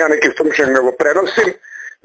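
A man talking in Serbian, breaking off briefly about a second and a half in.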